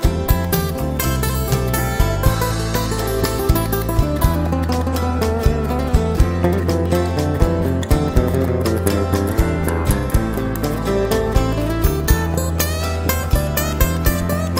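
Live acoustic band playing an instrumental passage: plucked acoustic guitars over a sustained bass line and a steady beat.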